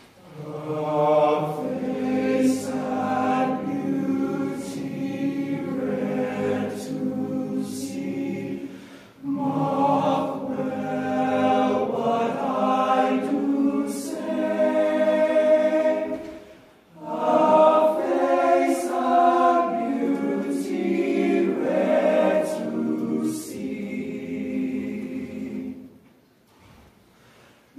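Men's choir singing a sea shanty arrangement in full harmony, in three phrases with short breaths between them about a third and two thirds of the way through.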